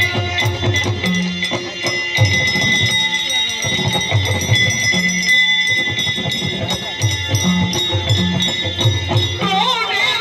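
Live Yakshagana accompaniment: a steady held drone under rhythmic drumming and regular metallic jingling strikes, with a singing voice entering near the end.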